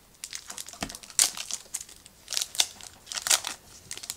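Foil trading-card pack wrapper crinkling as it is handled and opened, in irregular crackles, the sharpest about a second in.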